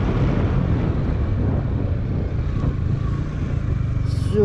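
Yamaha motorcycle engine running steadily at low road speed in third gear as the bike slows on a dirt road, with a constant low drone.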